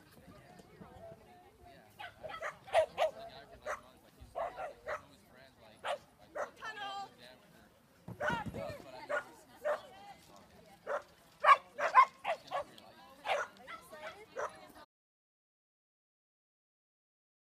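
Dog barking repeatedly in short, sharp barks that come in quick bunches while it runs an agility course.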